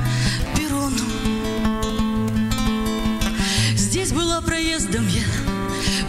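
Slow chanson song played live: acoustic guitar strummed over sustained backing notes between sung lines. A short wavering melody line comes in about four seconds in.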